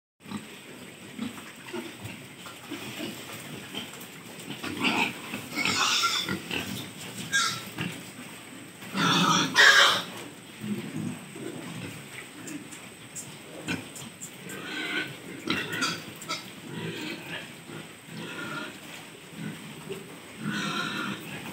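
A group of pigs grunting and calling in irregular short bursts, with the loudest burst about nine to ten seconds in.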